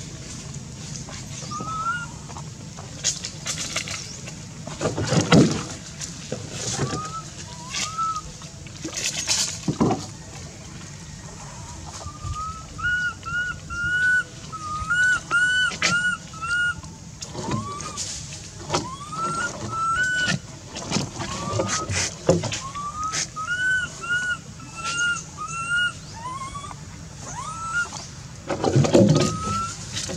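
Baby macaque crying: short, high whimpering coo calls, each rising then falling, scattered at first and then in quick runs from about halfway on. A few louder, noisy bursts and clicks fall between the calls.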